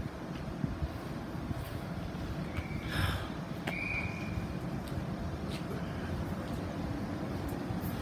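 Steady low rumble and hum of a standing electric intercity train at a platform, with two short high beeps about three to four seconds in.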